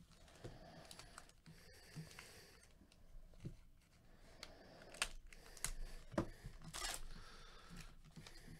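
Trading card packs being handled and opened with gloved hands: scattered small clicks and crinkles of the foil pack wrappers and cards, with a short tearing rasp a little before the end.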